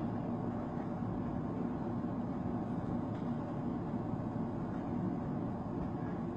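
Steady low background hum and rumble of room noise, with no distinct event.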